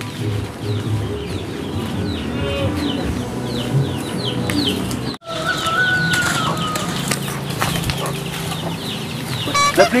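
Chickens clucking, with a run of short, high, falling peeps in the first half. The sound briefly drops out about five seconds in.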